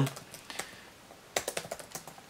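Computer keyboard typing: a few scattered keystrokes, then a quick run of them near the end.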